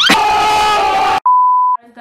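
Editing sound effect for a TV colour-bar glitch transition: a loud noisy burst of about a second, then a half-second test-tone beep, one steady pitch that cuts off abruptly.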